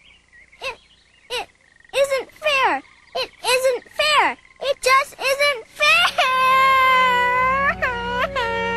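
A cartoon voice crying: a run of short, high sobs, each rising and falling in pitch, then from about six seconds in one long, drawn-out wail.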